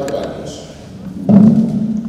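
Speech: a man talking into a handheld microphone, amplified in a large hall, with short pauses between phrases.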